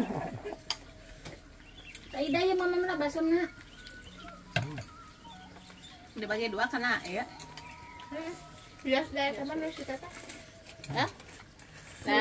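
Voices in short bursts of talk or calling, four times, with scattered small clinks of cutlery against dishes between them.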